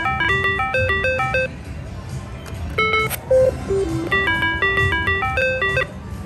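Electronic beeping tunes of a Double Double Diamond three-reel slot machine as its reels spin and stop: runs of quick stepping notes, a short lull, then a single bright ding about three seconds in before the notes start up again.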